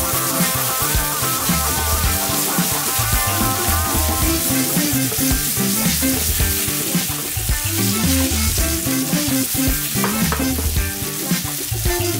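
Hairtail fillet sizzling in melted butter and oil in a frying pan, a steady crackling hiss while the butter is worked around the fish. Background music with a repeating bass line plays over it.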